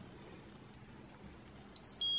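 A 20th-anniversary Tamagotchi virtual pet starts a high electronic beeping tune near the end, single tones stepping from pitch to pitch.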